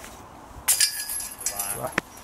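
A putted golf disc striking a disc golf basket: a sudden metallic crash of the hanging chains about two-thirds of a second in, then about a second of chains jingling and ringing. A brief voice sounds near the end, followed by a sharp click.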